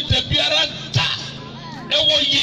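A voice with music playing behind it, and a few low thumps, the strongest near the start and about a second in.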